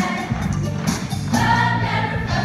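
Mixed show choir singing a number in full voice over instrumental accompaniment with a steady beat.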